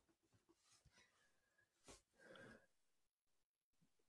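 Near silence, with two faint, brief sounds about halfway through.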